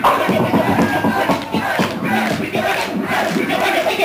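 Concert audience in a packed club shouting and cheering, many voices at once.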